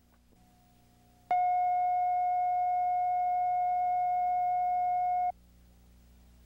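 A steady electronic test tone, one unwavering pitch with faint overtones, starts abruptly about a second in and cuts off abruptly about four seconds later. Faint low hum underneath.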